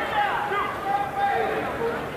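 Boxing arena ambience: crowd hubbub with indistinct voices calling out, softer than the broadcast commentary around it.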